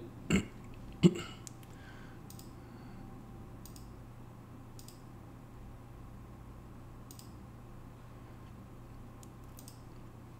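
A man clears his throat twice in the first second or so, then faint, sparse computer mouse clicks every second or two over a steady low hum.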